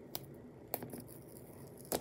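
Hands handling a cardboard smartphone box: three faint clicks and taps of fingers and box, the last, near the end, the loudest.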